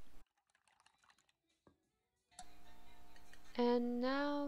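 Faint rapid clicking of wooden chopsticks against a stainless steel bowl as eggs are whisked, over near silence. About halfway through, background music comes back in, with a voice near the end.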